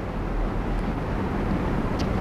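Steady rushing background noise with a low rumble, with no clear events in it.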